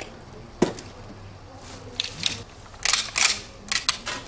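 Handling noise as seized shotguns and boxes are taken from a car boot and laid out: a sharp knock a little after the start, then a run of short clicks and rustles.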